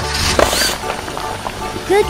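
Background music for a children's cartoon with sound effects: a steady low drill whir, and a short noisy burst about half a second in as the toy truck's drill bores into the box.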